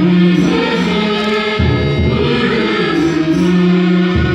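A small chorus of men's and women's voices singing a Hindi song in unison, with harmonium accompaniment and long held notes.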